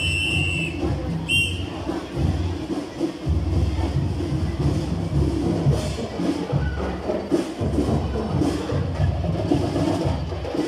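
Marching band music with loud, pulsing drums, as a parade marches past. A whistle is blown in a held blast that ends about half a second in, then a short blast about a second later.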